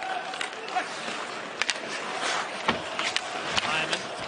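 Ice hockey game sound: a steady arena crowd murmur with several sharp clacks of sticks striking the puck and skates on the ice.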